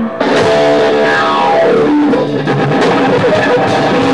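Loud live rock music led by an amplified electric guitar playing quick runs, with a falling glide of notes between about one and two seconds in. The sound dips briefly right at the start.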